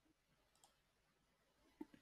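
Near silence broken by faint computer mouse clicks: one about half a second in and two in quick succession near the end.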